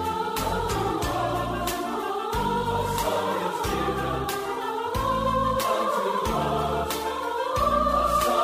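A choir singing with instrumental accompaniment over a steady beat.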